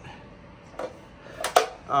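XT60 charger plug handled at the bike's charge port, with a couple of sharp plastic clicks about one and a half seconds in as it comes apart.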